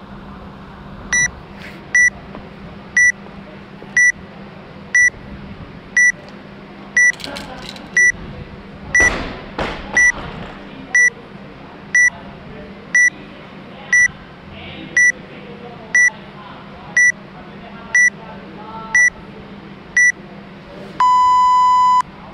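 Workout countdown timer: a short high beep once a second, about twenty in all, then a long lower beep near the end that signals the start of the workout.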